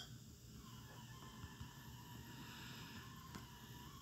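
Near silence: faint steady hiss of room tone, with a faint thin high tone.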